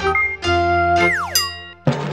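Cartoon-style TV channel logo jingle: bright synthesized musical tones with a sound effect whose pitch falls steeply about a second in, then a new sound with a wobbling pitch starting just before the end.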